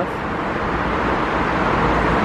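Steady road traffic noise from a busy multi-lane city road: cars, vans and minibuses passing in a continuous even rush.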